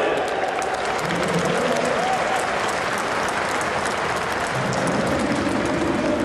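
Football stadium crowd applauding: a dense spatter of many individual claps over the steady noise of the crowd.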